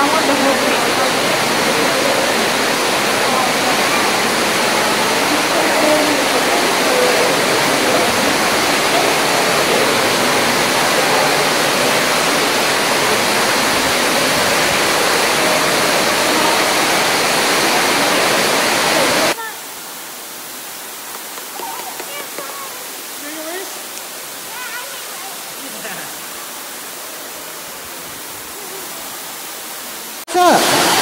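Steady rush of Ruby Falls, an underground waterfall pouring into a cave pool. About two-thirds of the way through, it drops suddenly to a much quieter rush with faint voices.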